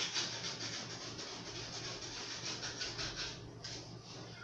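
Kitchen knife sawing through a foam mattress in quick back-and-forth strokes: a rhythmic rasping at about five strokes a second that stops shortly before the end.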